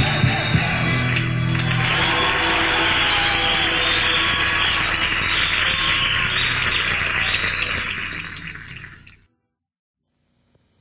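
A live Andean folk band's song ends on a held chord, and audience applause takes over. The applause fades out near the end.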